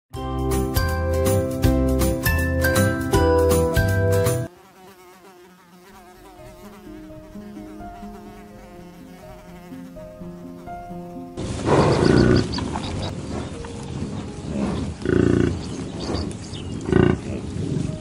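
A short, loud musical intro jingle, then soft piano music with a faint buzzing. From about eleven seconds in, American bison give about five loud, rough, deep bellows.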